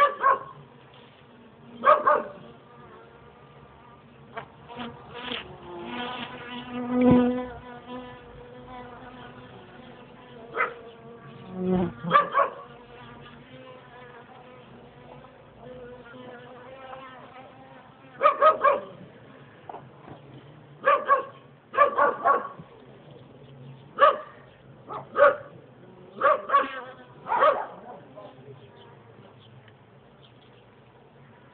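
Honeybees buzzing steadily at an opened hive during a comb inspection. A dog barks about a dozen times over the top, often twice in quick succession.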